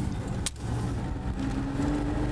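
Car engine running, heard from inside the cabin, its pitch rising slightly near the end as the car picks up speed. A single sharp click about half a second in.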